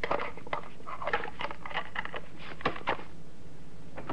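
Radio-drama sound effect of a garage door lock being forced: irregular metallic clicks, knocks and scrapes.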